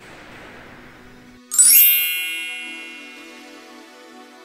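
Faint room noise, then about a second and a half in a bright bell-like chime rings out and fades, as soft electronic intro music with a low held tone begins.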